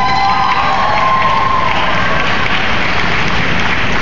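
Large audience in an arena applauding, with some cheering voices in the first second or so.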